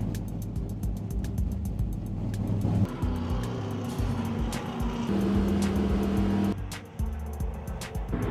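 Stock-car race engines running on a track, mixed with background music.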